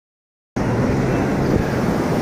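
Wind noise on the microphone over surf breaking on a sandy beach, a steady rush with a low rumble that starts abruptly about half a second in.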